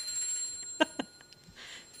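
A dog ringing a hanging bell to be let outside, its high ringing tones fading away over the first second or so. Two short sharp sounds come about a second in.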